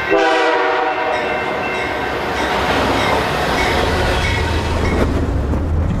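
Diesel freight locomotive sounding its air horn, several notes held together for about two and a half seconds, then the train rumbling and clattering past the crossing, the low rumble building toward the end.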